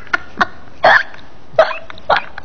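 A woman laughing in short, breathy, hiccup-like gasps: a few separate bursts, the loudest and longest about a second in.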